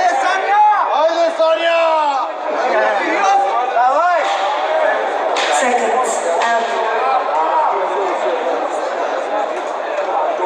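Arena crowd talking, with single voices shouting out in rising and falling calls, twice in the first half.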